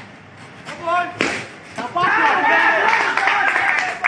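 Several people shouting and calling out over each other during a street game, loud from about halfway through. Just over a second in, one voice calls and a single sharp knock sounds.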